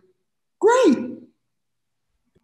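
A person's voiced sigh, a single breathy exhale whose pitch rises and then falls, lasting under a second. It starts about half a second in, between stretches of near silence.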